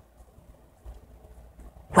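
Near silence: faint low room hum in a pause between spoken lines, with a woman's voice cutting back in right at the end.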